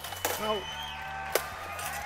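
A man's voice briefly, over a steady low hum, with one sharp knock a little past the middle.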